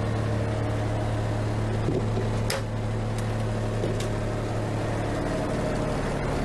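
Steady low hum of a diesel pusher motorhome's engine idling, heard from inside the coach through the floor. A sharp click about two and a half seconds in and a fainter one near four seconds.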